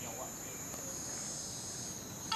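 Insects droning steadily at a high pitch.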